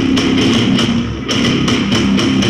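Rock band playing live on stage: drum kit hits under electric guitar and bass guitar, loud and dense.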